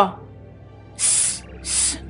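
A woman's voice hissing twice through her teeth, two short 'sss' sounds a little over half a second apart, about a second in.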